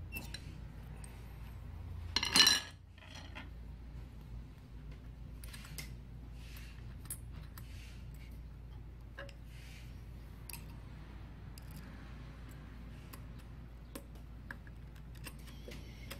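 Small metal clicks and clinks of a screwdriver working the feed dog screws on an industrial sewing machine, with one much louder clink about two seconds in.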